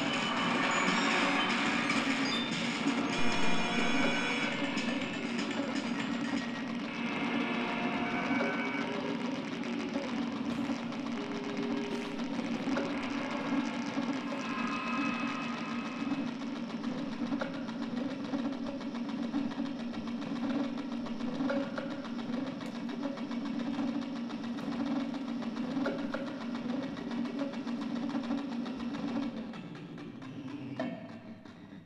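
Circuit-bent electronic instruments played live through amplifiers: a steady low buzzing drone under glitchy tones and a clattering rhythm, cutting out just before the end.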